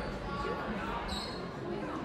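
Gymnasium ambience during a stoppage in a basketball game: crowd chatter and players' voices echoing in the hall, with a brief high squeak about a second in.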